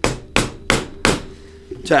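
Official UFC 4-ounce MMA gloves knocked against a tabletop, three hard knocks in quick succession, about a third of a second apart. The knocks show how stiff and unyielding the glove padding is, 'hard as iron'.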